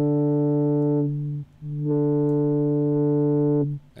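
Arturia Pigments software synthesizer sounding a sustained low note, played from a QuNexus keyboard controller: one steady note held for about a second and a half, then the same note played again and held for about two seconds. The tone is rich in overtones.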